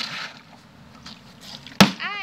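A large plastic milk bottle holding some liquid is flipped and lands with one sharp, loud thud on concrete near the end, after a brief scuffing noise at the start as it is handled.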